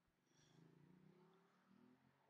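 Near silence: faint outdoor background with a low, faint hum.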